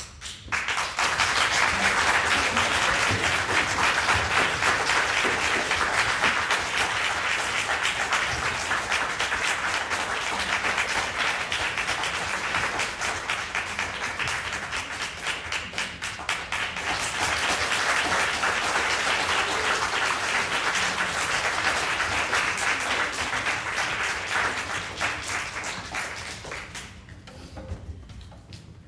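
Audience applauding, starting just after the music stops. The applause thins out about halfway through, swells again, and then dies away near the end.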